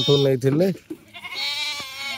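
A Ganjam goat bleats once, a drawn-out call in the second half, after a man's voice in the first moments.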